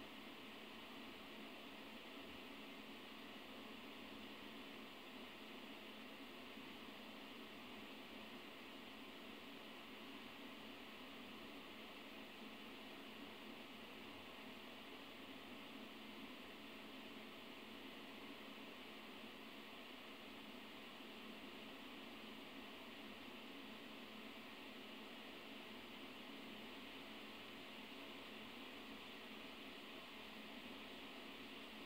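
Near silence: a steady, even hiss, the background noise of an old lecture recording.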